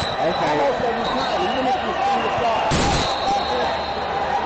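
Spectators' voices chattering in a large hall, with one heavy thud about three quarters of the way in.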